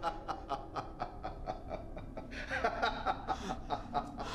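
A person laughing in short, evenly repeated chuckles, about five a second, growing fuller and louder a little past halfway.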